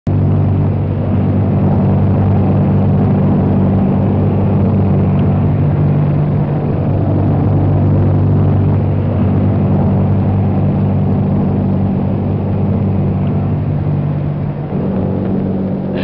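Steady drone of a bomber's engines heard inside the aircraft: a low, even hum of several steady tones that holds at one pitch throughout.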